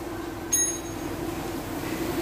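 A brief, high metallic ping about half a second in that rings out for a moment, over a steady low background hum.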